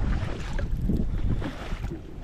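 Wind buffeting the microphone, an uneven low rumble with gusts rising and falling, over a boat on choppy water.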